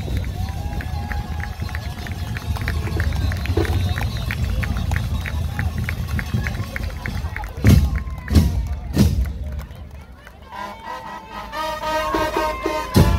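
Murga band warming up: a steady light ticking about five times a second over a low rumble, then three loud bass drum strikes with cymbal about two-thirds of the way in. Near the end the brass section comes in with held notes.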